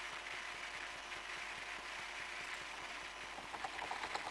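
Steady low hiss of a desk microphone's background noise, with a few faint clicks near the end.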